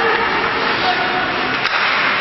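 Noisy ice hockey rink ambience: a steady wash of crowd noise and voices from the stands and players, with one sharp crack about one and a half seconds in, like a stick or puck striking.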